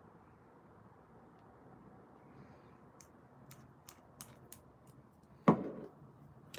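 Small plastic clicks and taps as nail swatch sticks are handled and set onto a clear acrylic display stand, then one louder knock about five and a half seconds in as a stick is put down.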